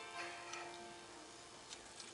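Faint piano accompaniment, its held notes slowly dying away.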